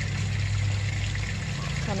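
Water pump running under a pool's tarp cover with a steady low hum, with water running and trickling beneath the tarp as it pumps out collected rainwater.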